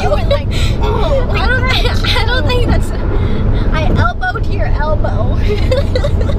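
Steady low road and engine rumble inside a moving car's cabin, with two women laughing and chattering over it in spells during the first half and again about four seconds in.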